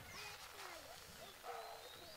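Faint outdoor background of distant voices, with a few high chirping calls.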